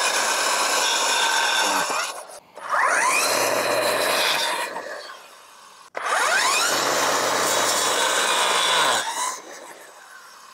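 Ryobi attachment-capable string trimmer driving a Viyuki 8-inch brush cutter blade, run in three bursts while cutting through small saplings. The second and third bursts open with a rising whine as the blade spins up, and each dies away as the motor winds down.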